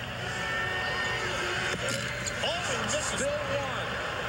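Basketball arena crowd noise: a steady din from a packed crowd, with individual voices calling out above it in the latter half.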